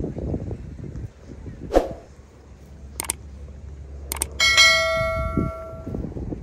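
Subscribe-button sound effect: a sharp click-like sound, then two mouse clicks, then a bright bell chime that rings on and slowly fades, over low wind rumble on the microphone.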